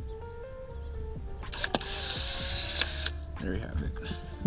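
Polaroid SX-70 Land Camera taking a picture: a shutter click about one and a half seconds in, then the camera's motor whirring for just over a second as it ejects the print, ending in a click.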